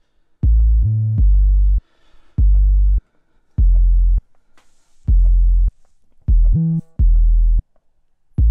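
An 808 bass sample played through Logic Pro X's EXS24 sampler, heard on its own: a pattern of six deep bass notes. In two of them the pitch slides up and back down, the legato glide between overlapping notes.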